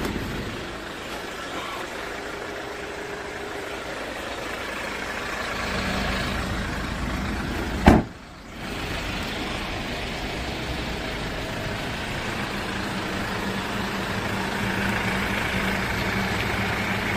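Hyundai Grand Starex van's engine idling steadily, with one loud slam about eight seconds in as its sliding door is shut.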